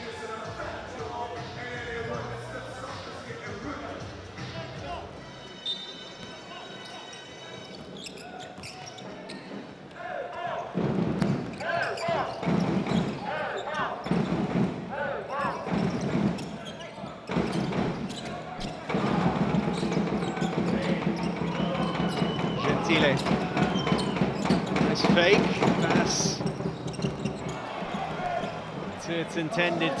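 Basketball game sound in an arena: a ball being dribbled on the hardwood, with crowd noise. It is subdued at first and grows louder from about ten seconds in, with dribbles about a second apart.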